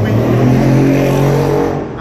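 A car's engine running close by, a steady low hum that drowns the street for a moment, then fades just before the end.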